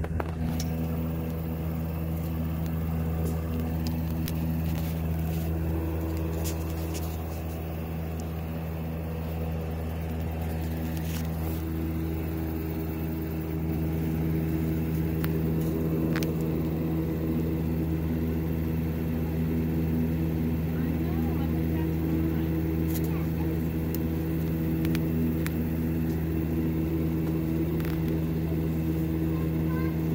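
A steady low mechanical hum with several even pitched tones, like a motor or engine running, growing a little louder about halfway through, with a few faint clicks.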